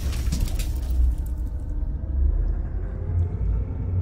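Cinematic sound effect of a logo animation: a deep, steady low rumble, with the tail of a crashing impact fading out over the first second.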